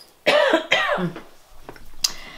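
A woman clearing her throat, a short rough vocal burst starting about a quarter second in and lasting under a second.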